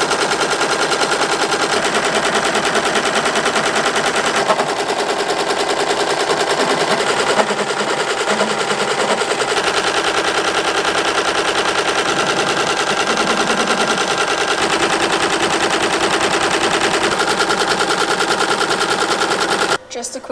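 Multi-needle embroidery machine stitching into a hooped sweatshirt: a loud, fast, steady rattle of the needle strokes that cuts off abruptly near the end.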